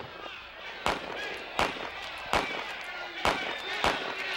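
Scattered gunshots, five sharp cracks at uneven gaps of about half a second to a second, over a faint background of voices.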